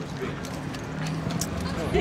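A horse's hooves clop a few times on hard pavement as it shifts its feet, over a steady low hum.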